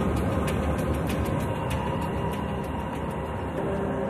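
Ship's anchor chain running out: a steady, heavy metallic rumble and rattle.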